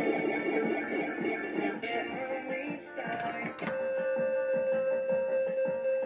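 Electronic music and chimes from a Fruit King 3 fruit slot machine as it runs a spin, with two sharp clicks about three seconds in and a long, steady held tone through the second half.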